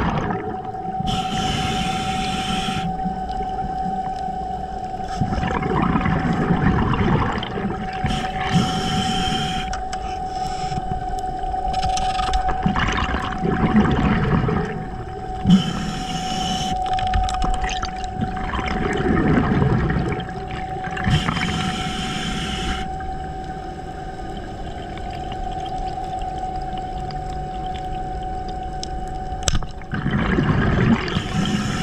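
Underwater sound picked up by a diver's camera: water rushing and gurgling past the housing, with a steady whine held throughout. Four bursts of hiss, each about two seconds long, come every six or seven seconds.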